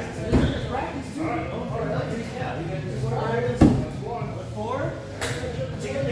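Two sharp wooden thuds of throwing axes striking wooden target boards, the second one louder, over people talking in a large hall.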